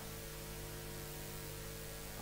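Steady electrical mains hum with a faint hiss beneath it, picked up through the podium microphones' sound system.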